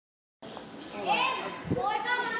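Excited children's voices, starting about half a second in, loudest just after the first second.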